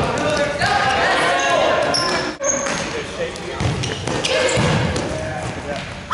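Futsal game in an echoing gym: the ball thuds a few times off feet and the hard floor, the clearest about midway and a second later. Players' and spectators' voices carry throughout, with short high squeaks from shoes on the floor.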